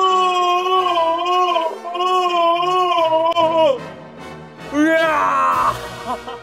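A long, sustained sung 'aah' with a wavering pitch, held for nearly four seconds, like a dramatic choral sound effect. Near the end comes a shorter vocal phrase that slides down in pitch.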